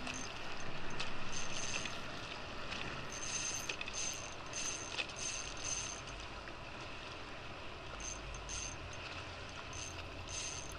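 Short bursts of a spinning reel whirring, several in quick succession in the middle and a few more near the end, as a strong fish is fought on light tackle. Wind and lapping water wash steadily underneath.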